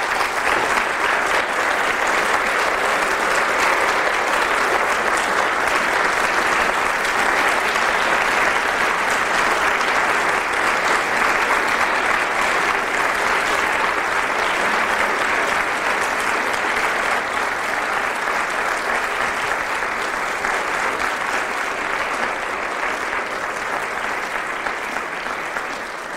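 Audience applauding at the close of a live lecture, a long unbroken round of clapping that tapers off slightly near the end.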